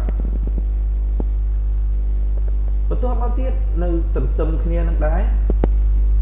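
Loud, steady, low electrical mains hum on the recording, with a few sharp clicks in the first second and a voice speaking briefly from about three seconds in.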